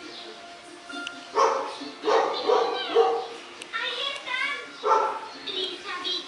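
A dog barking and yipping in a run of short, pitched barks, starting about a second and a half in, with faint background music underneath.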